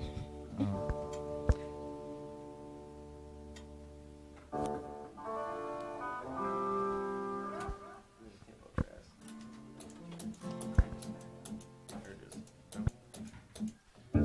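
Guitar sounding a few sustained chords that ring and fade, with fresh chords coming in about four and a half and six seconds in. Later come scattered light taps and clicks.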